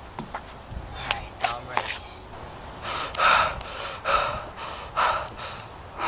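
A boy breathing hard and out of breath after running, about four loud, breathy gasps roughly a second apart in the second half. A few sharp taps come in the first two seconds.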